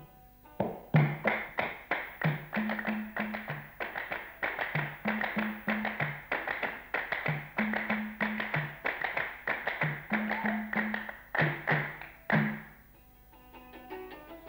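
Theme music in a percussion-only passage: a quick, steady rhythm of sharp claps with low drum strokes on two alternating pitches. It stops abruptly shortly before the end.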